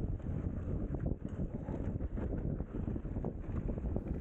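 Wind buffeting the microphone of a helmet camera on a fast mountain-bike descent, with irregular knocks and rattles from the bike bouncing over a rough dirt trail.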